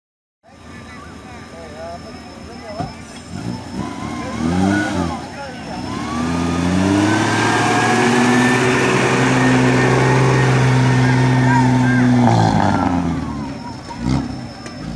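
Off-road 4x4's engine revving up about four seconds in, then held at high revs under load for several seconds as it drives the course, easing off about a second before the end.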